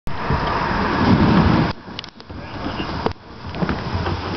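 A loud rushing rumble for the first second and a half that stops abruptly, then quieter knocks and handling noises as a plastic kayak is worked into the water at the bank.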